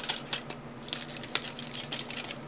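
Aluminum foil crinkling in the hands as a small strip is folded, with scattered small crackles.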